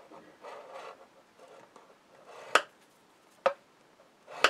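Scoring tool drawn down a groove of a scoring board through cardstock, a short faint scrape, then two sharp clicks about a second apart, the first the louder.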